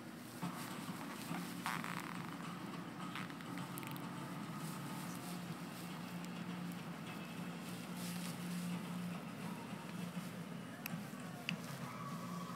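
A steady low hum with light rustling and a few soft clicks.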